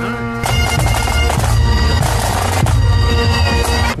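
Great Highland bagpipes playing: steady drones under a chanter melody, growing louder about half a second in.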